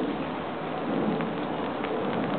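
Rain falling: a steady hiss with a few light drop ticks.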